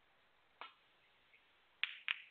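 Snooker balls clicking: the cue tip strikes the cue ball about half a second in, then two loud, sharp clacks of balls striking near the end.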